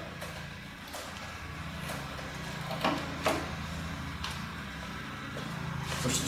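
Clicks and knocks of a power plug and cable being handled at a vacuum-pump trolley, over a steady low hum. The two sharpest knocks come close together about three seconds in.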